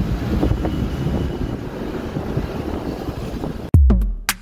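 Low rumble of a moving road vehicle with wind buffeting the microphone. Near the end it cuts off suddenly and background music with a drum-machine beat starts.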